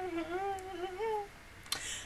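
A woman humming with her mouth closed: one long, wavering hummed note that stops a little past halfway.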